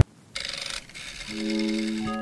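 Background music cuts off, and after a short gap comes a half-second scrape of a silicone spatula spreading cream in a plastic tub. A new music track begins about a second and a half in.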